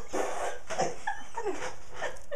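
Young puppies giving short whimpers and yips as they play, mouthing a tinsel garland together.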